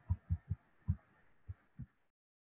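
A stylus knocking on a tablet screen while letters are handwritten: about seven short, dull thuds at uneven spacing.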